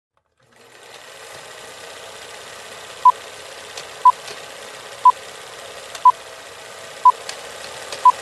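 Old-film countdown leader sound effect: a film projector's steady clatter and crackle that starts about half a second in, with a short high beep once a second from about three seconds in, five beeps in all.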